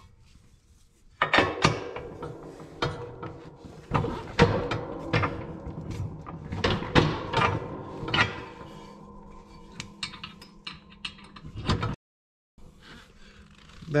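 Repeated short metal clicks and clanks as the snow plow's push tube is pinned to its mount by hand, a pin and cotter pin pushed through the bracket.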